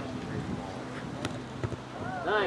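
Faint distant voices across an outdoor football pitch, with two short sharp knocks a little past halfway, from the ball being kicked in play.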